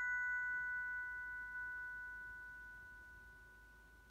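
Glockenspiel bars ringing on after the final notes of a tune, two or three clear bell-like tones dying away slowly; the highest fades within the first second and the rest trail off to almost nothing by the end.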